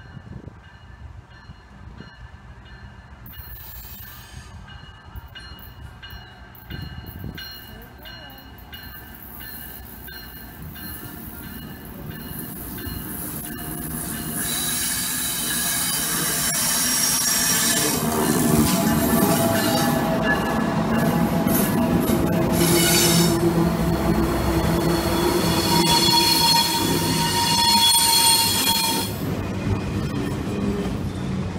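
CSX freight train led by diesel locomotives approaching and passing close by, its engine and wheel noise growing steadily louder through the first half. For most of the second half the locomotive's multi-note air horn sounds in long blasts, over the roar of wheels on rail as the autorack cars go by.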